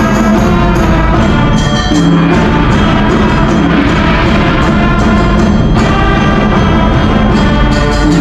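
School concert band playing: brass and woodwinds holding full chords with percussion, loud and steady throughout.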